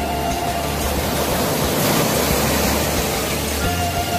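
Steady rushing noise under faint background music; the noise swells slightly about halfway through.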